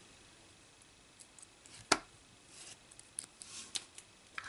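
Small clicks and handling noise from the test-lead clips as a resistor is unclipped, with one sharp click about two seconds in.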